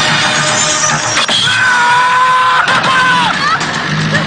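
Action film trailer soundtrack: loud music under dense noisy action effects. About a second and a half in, a held high tone enters; it wavers and drops away a little after three seconds.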